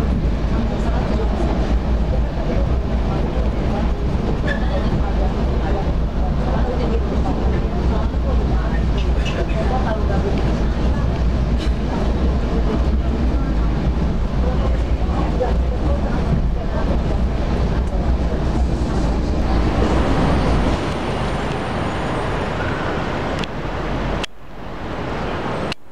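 Passenger train carriage running along the tracks, heard from inside: a steady, loud low rumble with a noisy wash over it. The deepest part of the rumble drops away near the end.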